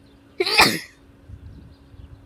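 A single loud, brief vocal burst from a person close to the microphone, about half a second in, falling in pitch.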